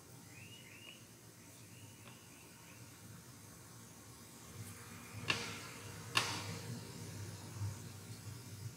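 Quiet room with a run of faint, short high chirps in the first couple of seconds, then a few soft clicks in the second half.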